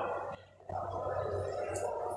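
A man's voice holding a steady, drawn-out throaty sound, starting about two thirds of a second in after a brief gap.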